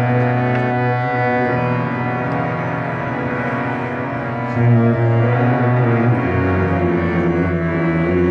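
Harmonium playing a sustained melodic passage with tabla accompaniment, part of a ghazal performance. The instruments sound steady throughout, with a low swell about halfway through.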